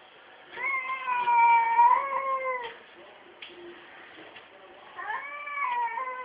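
Domestic cats in a standoff yowling: two long, drawn-out wails, the second starting about five seconds in, the threat yowling of a cat fight.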